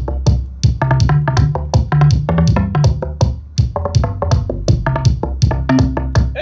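An electronic beat of programmed drum-machine percussion: quick, busy hits over a bassline that steps between notes.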